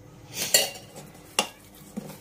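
Light clatter of a non-stick kadai being handled on a marble counter, with one sharp knock about one and a half seconds in.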